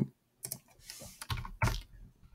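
Computer keyboard keystrokes: several separate key presses spread over a couple of seconds.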